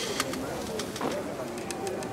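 Pigeons cooing in the background, with a few faint clicks.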